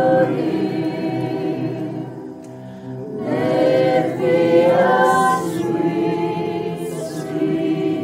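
A small group of women singing a slow worship song together in long held notes. The singing drops briefly about two seconds in, then swells again.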